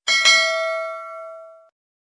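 Notification-bell chime sound effect: a bright metallic ding with a second hit a moment later, ringing on several tones and fading out by about a second and a half in.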